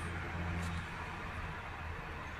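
Steady low background hum with a faint even hiss.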